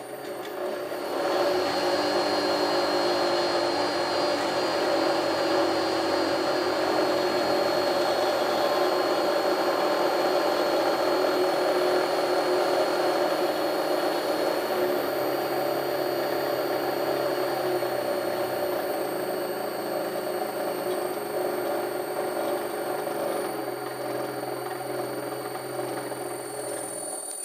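Pillar drill's electric motor, run through a frequency inverter, spinning up about a second in and then running at high speed with a steady whir and a thin high whine. Over the second half the sound sinks slowly as the spindle speed is turned down.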